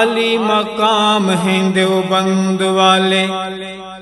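A man's voice singing a wordless, bending melodic line over a steady low drone, in the unaccompanied chant style of an Urdu naat or tarana; the sound fades toward the end.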